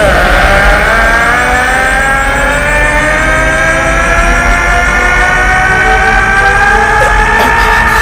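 A man's long, unbroken power-up scream, rising slowly in pitch, over a low rumble: an anime character yelling as he transforms.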